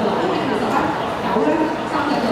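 A dog barking over the continuous chatter of a crowd of people.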